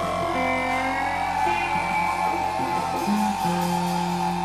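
Live rock music led by an electric guitar holding long notes that bend slowly in pitch, over a bass line that steps between held low notes.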